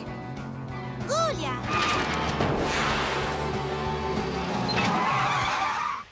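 Cartoon vehicle sound effect over background music: from about two seconds in, a loud rushing noise builds and ends in a tyre screech, then cuts off suddenly.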